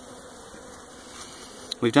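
Steady buzzing of a honeybee colony swarming over a brood frame lifted out of an open hive.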